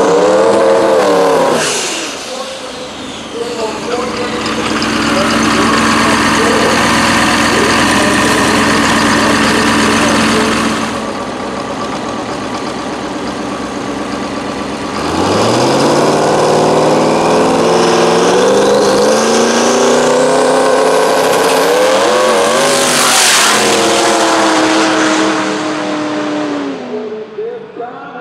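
Turbocharged diesel rail dragster engine, revving hard and running loud with heavy black smoke. After a quieter spell about halfway, its pitch climbs steeply from low as it launches and accelerates down the strip. The sound peaks in a sharp sweep as the car passes, then falls away and fades near the end.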